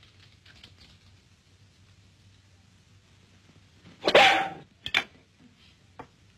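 A dog barks twice about four seconds in: one longer bark, then a short one.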